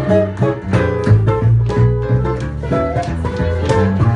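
A small swing combo playing an instrumental passage: a violin bowing the melody over an upright double bass and an archtop electric guitar keeping a steady rhythm.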